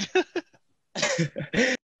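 A man's laughter over a video call, in short bursts: a few quick ones at the start and another group about a second in, with a brief silence between.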